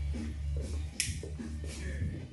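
Background music with a steady bass, and a single sharp snap about a second in.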